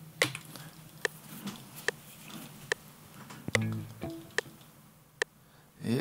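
FL Studio's metronome ticking evenly at about 72 beats per minute as the recording count-in. A faint backing track with guitar joins about halfway through, with the ticks going on over it.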